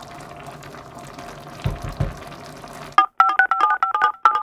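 Quiet background with two soft low knocks, then, about three seconds in, a quick run of loud electronic beeps, two tones sounding together on each beep.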